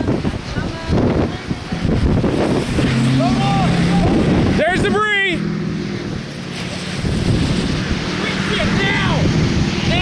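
Strong storm wind buffeting the microphone in a steady rush of noise near a wedge tornado. Short shouted exclamations break through a few seconds in, around the middle and again near the end.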